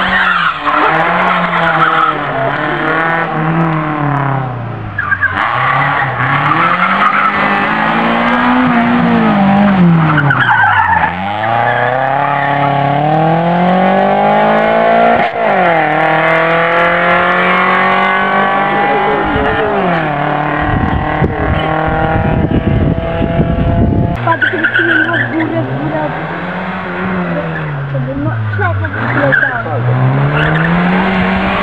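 Rally car engines revving hard past the spectators, the engine note climbing through the gears and dropping on each shift and under braking, with some tyre squeal on the tarmac. About two-thirds of the way through there are a few seconds of rough low rumbling.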